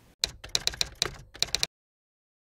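Typewriter key-strike sound effect: a quick run of about a dozen sharp clacks.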